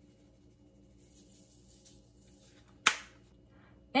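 One sharp plastic click about three seconds in, from handling seasoning shakers over a plate of chips, against otherwise quiet room tone.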